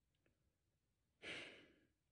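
A man's audible exhale, a sigh of about half a second a little over a second in, fading out; otherwise near silence.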